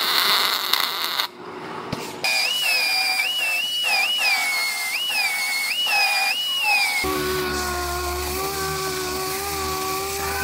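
Welding crackle for about the first second. Then a high-pitched pneumatic tool whine that dips in pitch again and again as it bites into the welds on the truck's bed rail. About seven seconds in it gives way to a lower, steadier hum from a small air-powered sander smoothing the welds.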